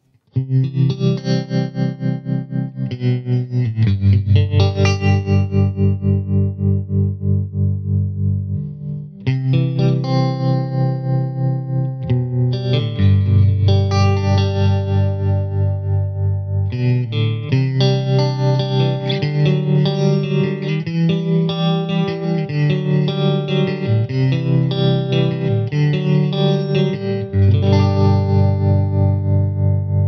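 Electric guitar, a Fender Stratocaster through a Badcat Black Cat amp's clean channel with the amp's tremolo on: sustained chords changing every few seconds, their volume pulsing quickly and evenly.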